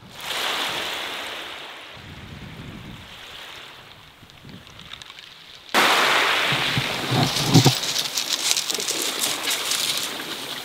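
Waves washing on a shingle beach: a swell of noise that fades over several seconds. More than halfway through it changes abruptly to louder, rougher surf and wind noise with low rumbles.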